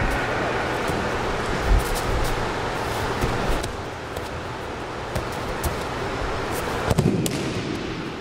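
Bare feet and bodies moving on wrestling mats during an aikido throw, with a few sharp slaps; the loudest, about seven seconds in, is the thrown partner's breakfall landing on the mat.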